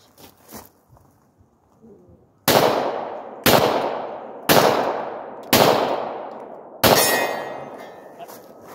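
Five pistol shots from a Glock 22 in .40 S&W, about a second apart with the last a little later, each followed by an echo that fades over the next second.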